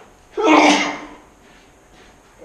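A person sneezing once: a single loud, sudden burst about a third of a second in, lasting about half a second.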